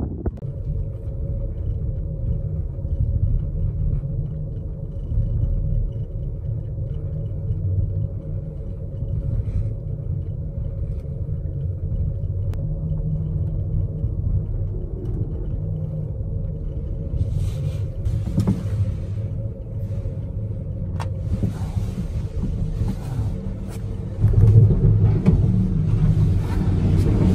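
Steady rumble and hum of a gondola cabin running on its haul rope, heard from inside the cabin. About seventeen seconds in, a hiss and a few clicks join it, and near the end it gets louder as the cabin runs into the terminal station.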